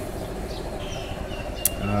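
A steady low rumble of outdoor background noise by a road, with a few faint high chirps and a single small click in the second half. A man's voice starts with an 'um' at the very end.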